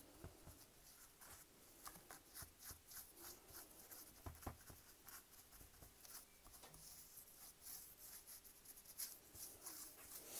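Faint, quick scratchy strokes of a stiff paintbrush worked over rough wooden miniature floorboards, the brush only lightly loaded.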